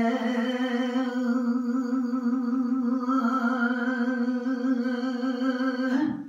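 A man singing a Punjabi kalam unaccompanied, holding one long, steady note through the whole stretch while the vowel shifts, and letting it go at the very end.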